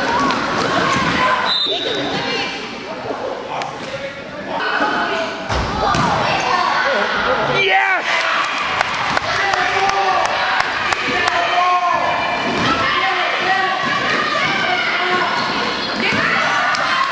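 Basketball bouncing and being dribbled on a gym floor, with many sharp knocks. A continual hubbub of overlapping voices and shouts from spectators and players echoes in the gym hall.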